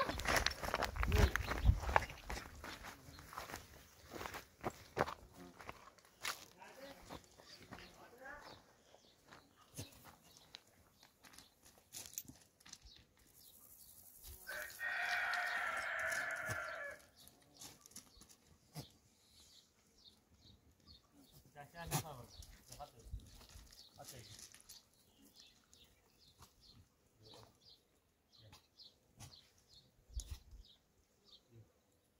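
One long farm-animal call, about two and a half seconds, midway through, over scattered knocks and clicks, with heavier thumps at the start.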